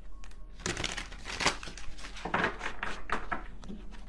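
A deck of tarot cards being shuffled by hand: a quick, uneven run of papery rustles and card slaps.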